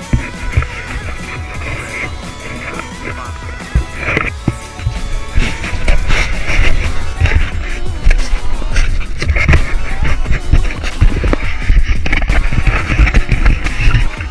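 Background music plays over loud rumbling, knocking and wind noise from a camera carried along at a run, getting louder about five seconds in.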